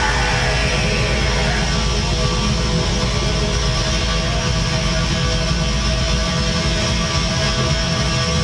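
Black metal band playing live: distorted electric guitars, bass and drums in a dense, steady wall of sound.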